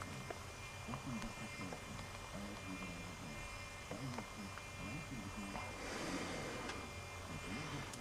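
Low, steady mains hum from electrical bench equipment, with faint background room noise.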